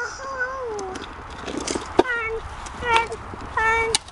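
A high-pitched excited voice calling out without words: one long falling call in the first second, then three short falling calls. There is a single sharp knock about halfway through, over a low steady rumble.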